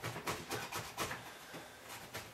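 Faint, quick scraping and tapping of hands on a cardboard parcel and its plastic strapping, about four small scrapes a second.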